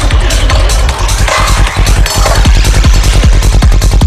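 Dark psytrance: a fast, steady kick drum and rolling bassline under swirling synth effects. The kick briefly drops out near the middle and then comes back in.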